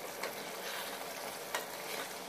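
Wooden spatula stirring mutton curry in an aluminium pressure-cooker pot, scraping through the thick masala gravy as it fries on low flame. A steady soft hiss runs under a few light scrapes.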